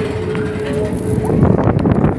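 General fairground din heard from aboard a moving ride: a dense rumble with wind on the microphone, and a steady hum that fades out within the first second.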